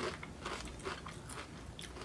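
A person chewing a mouthful of Doritos Spicy Nacho tortilla chips: a run of short, soft crunches.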